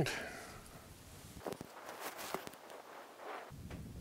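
Faint handling sounds, a few soft clicks and rustles, as an arrow is nocked and a compound bow is drawn back to full draw.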